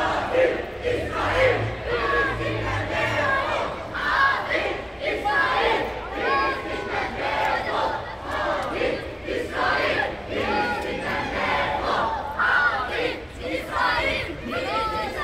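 A crowd of many voices shouting together, loud and coming in repeated surges.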